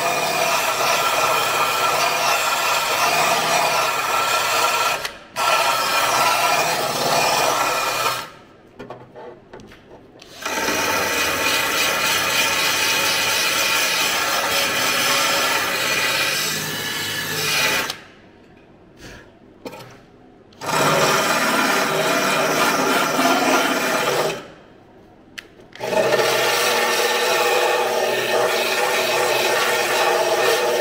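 Cordless drill spinning a small wire wheel against bare steel body panel, scrubbing off light surface rust. It runs in long bursts, stopping briefly three times.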